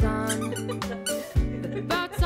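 Upbeat background music with a regular drum beat, held bass notes and a high, wavering melody line that glides up and down.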